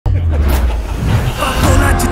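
A heavy, steady low rumble under a man's voice, with music coming in over the last half second.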